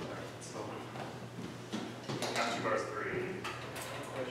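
Quiet room noise: a few low voices and small knocks and rustles, over a steady low hum.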